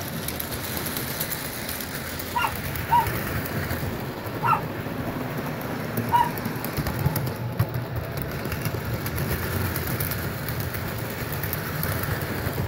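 Model train running on its track: a steady rattling rumble of the wheels and motor that grows louder near the end as the cars pass close by. Several short chirps come through in the first half.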